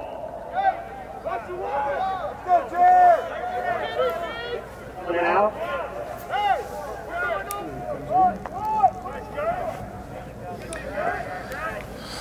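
Many voices shouting short calls across a lacrosse field, overlapping yells from players and spectators coming one after another with no clear words.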